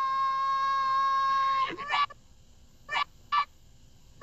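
Cartoon sound effects: a steady, buzzy held tone that cuts off after almost two seconds, then a few short squeaks, the last two close together.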